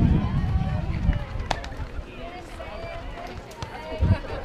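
Voices of players and spectators calling out and chattering across a softball field, with a low wind rumble on the microphone that fades after the first second. One sharp click about a second and a half in.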